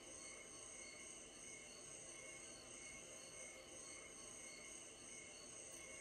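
Recorded cricket chorus played back in the room, a steady high chirring made of several held high tones over a soft hiss.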